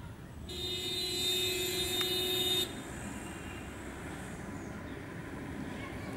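A vehicle horn sounding one steady blast of about two seconds, starting about half a second in and cutting off sharply, over a low vehicle rumble.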